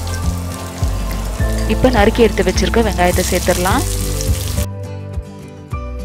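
Chopped onions sizzling as they go into hot oil in a steel pressure cooker; the sizzle cuts off suddenly about three-quarters of the way through.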